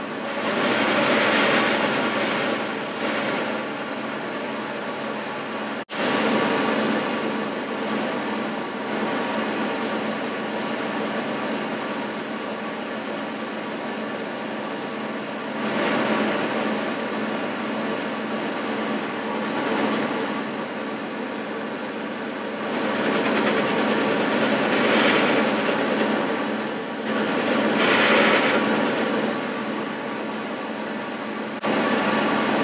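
Boxford metal lathe running steadily with a humming drive while a carbide-insert tool turns down the outside diameter of a bush. The cut swells louder and hissier in several stretches: near the start, about halfway, and twice near the end. There is a brief break about six seconds in.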